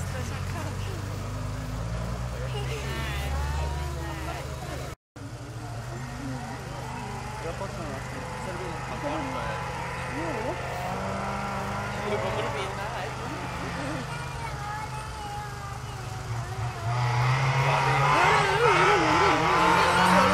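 Rally car engine running hard up a gravel hill-climb stage, getting much louder near the end as the car comes close, with spectators talking over it. The sound cuts out for a moment about five seconds in.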